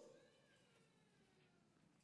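Near silence, with only a very faint, wavering high-pitched trace.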